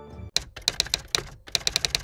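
Typing sound effect for on-screen text: a quick, uneven run of sharp key clicks starting about a third of a second in, as the title types itself out letter by letter.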